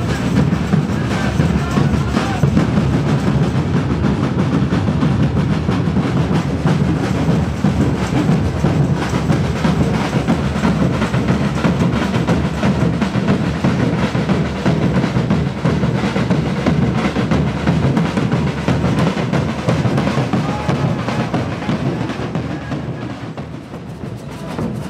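Congada drum band playing a dense, steady rhythm on large bass drums and snare drums, dipping in level briefly near the end.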